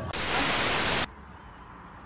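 A burst of TV-style static hiss used as a transition effect, lasting about a second and cutting off suddenly.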